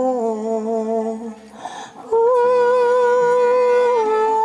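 Live acoustic band song: a long held note that wavers slightly in pitch, a short break about a second and a half in, then another long, steady held note.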